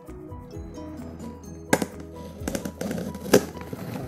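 Background music with a light melody over a knife cutting and scraping through packing tape on a cardboard box, with two sharp clicks, about a second and a half apart, in the second half.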